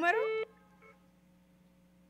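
A voice cuts off into a short steady tone on the telephone line, lasting under half a second, followed by only a faint low hum of the open phone line.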